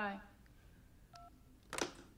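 A single short telephone keypad beep about a second in, as a cordless phone call is ended, then a brief burst of noise near the end. All of it is faint.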